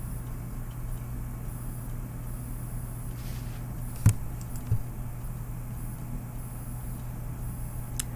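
A steady low hum in the background, with a single computer mouse click about four seconds in and a fainter click shortly after.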